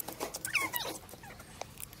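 An animal's short high call, rising and then falling in pitch about halfway through, over faint clicks of a knife working on raw crab shell.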